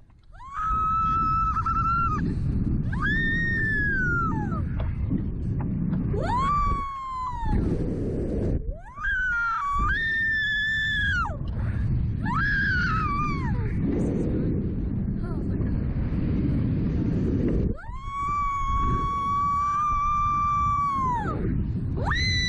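Girls screaming on a reverse-bungee thrill ride, about six long, high, held screams, the last and longest near the end. Steady wind rushes over the microphone as the ride flings them through the air.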